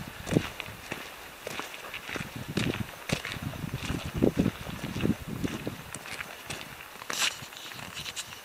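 Footsteps of hikers walking on a forest track, irregular thuds with the light tap and click of trekking poles.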